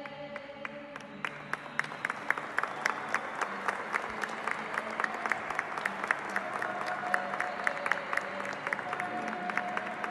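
A congregation applauding, the clapping starting just after the beginning and growing fuller within the first two seconds. Faint music or singing holds underneath.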